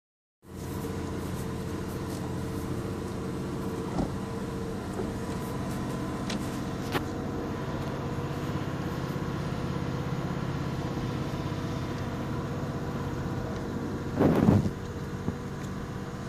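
Steady engine hum and road noise of a moving vehicle heard from inside the cabin, with a couple of faint clicks. A brief louder noise comes near the end.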